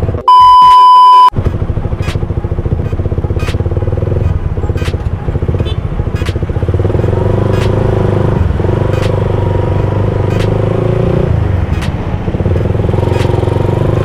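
A loud, steady electronic test-tone beep lasting about a second near the start, then a motorcycle engine running at low speed in slow traffic, recorded onboard, with light regular ticks about every 0.7 seconds.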